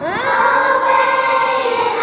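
A children's choir singing together. A new phrase opens with a quick upward slide into a long held note.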